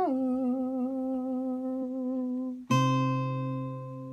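Acoustic guitar with a man's voice holding a long wordless note. The note slides down at the start and wavers as it is held for about two and a half seconds. Near the end the guitar strikes a final chord that rings on and slowly fades.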